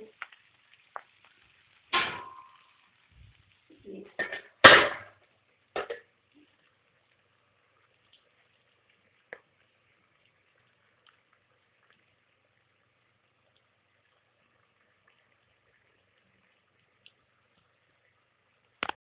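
A steel spoon knocking against a steel cooking pan a few times, one knock at about two seconds ringing briefly and the loudest at about four and a half seconds, then long stillness broken only by a few faint clicks.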